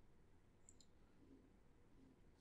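Near silence: faint room tone, with a faint mouse click about three-quarters of a second in.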